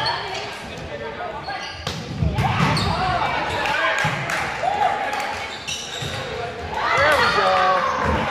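Volleyball rally in a gym: the ball is struck several times off players' arms and hands, with short sharp hits, while players shout calls to each other, all echoing in the large hall.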